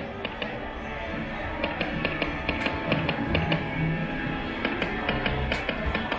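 Big Hot Flaming Pots video slot machine playing its game music and reel-spin sounds through two paid spins, with a run of short, sharp ticks as the reels spin and land.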